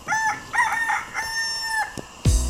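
A rooster crowing: a few short notes, then one long drawn-out note that cuts off just before the end.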